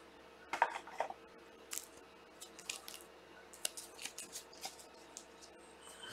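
Trading cards and stiff plastic card holders being handled, with scattered small clicks, taps and rustles, a cluster of them about half a second to a second in. A faint steady hum sits beneath.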